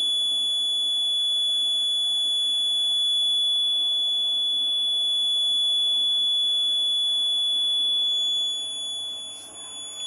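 Piezo alarm buzzer on a Raspberry Pi Pico accident-detection board sounding one continuous high-pitched tone, the accident alert raised after a tilt is detected while the unit sends its SMS alert. The overall level eases off near the end.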